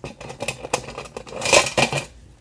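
Clicking, rustling and scraping of objects being shifted about on a worktable while scissors are reached for, with a louder stretch of scraping about a second and a half in.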